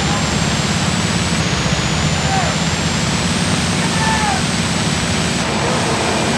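Steady low rumble of fire apparatus engines and pumps running at the fireground, with faint distant voices. Heavy VHS tape hiss and a thin high whine from the tape run underneath.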